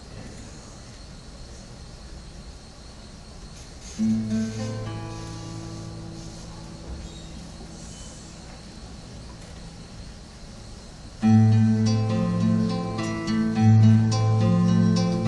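Solo acoustic guitar. After a few seconds of low background noise, a chord rings out about four seconds in and dies away slowly, then from about eleven seconds a louder run of picked notes begins.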